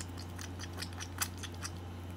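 Metal spoon stirring mashed avocado in a ceramic bowl: a run of quick, irregular clicks and scrapes of spoon against bowl, the loudest a little past the middle, over a steady low hum.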